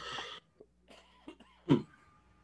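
A person coughing over a video-call line: a breathy burst at the start, then one short, sharper cough near the end.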